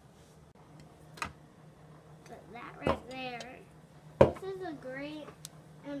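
Sharp knocks and clicks of tools and toys being handled on a wooden workbench, the loudest about four seconds in, with a high child's voice speaking briefly twice between them. A faint steady hum sits underneath.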